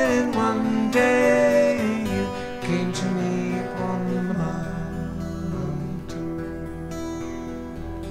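Two acoustic guitars playing a strummed and picked folk accompaniment. A sung line holds over the first couple of seconds and fades out, leaving the guitars alone.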